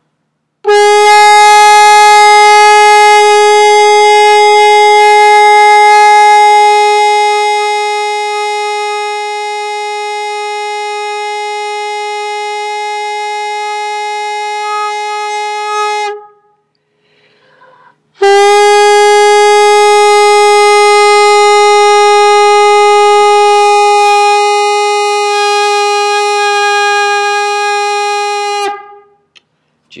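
A shofar blown in two long single-note blasts, the first about fifteen seconds and the second about ten, each holding one steady pitch and growing softer partway through.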